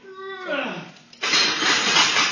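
A bench-presser's short strained vocal grunt, then about a second in a loud, rushing forced exhale lasting just over a second as he drives the barbell up through the rep.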